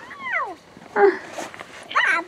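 A young child's high squeal that slides down in pitch for about half a second, followed by a short vocal sound about a second in, as the children tumble to the ground.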